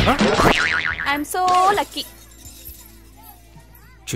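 Film soundtrack: a sudden, roughly two-second burst of comic music and sound effect with a wobbling, warbling pitch, then faint background music.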